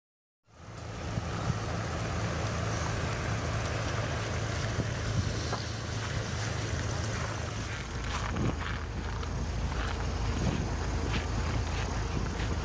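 A car engine running steadily with a low hum, with wind noise on the microphone. It starts about half a second in, and the low rumble grows heavier after about eight seconds.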